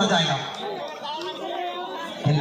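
Voices only: a man talking loudly at the start, then quieter overlapping crowd chatter.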